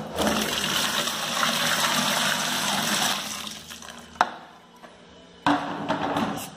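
Water poured in a stream into a plastic bucket of thickened soap base, splashing and rushing for about three seconds, then tailing off. A single sharp knock follows about four seconds in.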